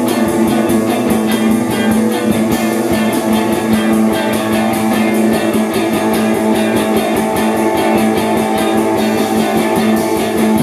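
Live rock band playing an instrumental passage: electric guitar and held low notes over a drum kit keeping a fast, even cymbal beat.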